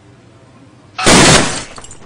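A sudden, very loud crash of breaking glass about a second in, fading out over the next half second with a little ringing.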